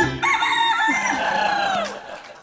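A rooster-style crow: one high, held call that wavers and then falls away in pitch near the end.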